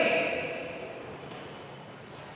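The end of a woman's word fading away in a quiet room, followed by faint, even room noise.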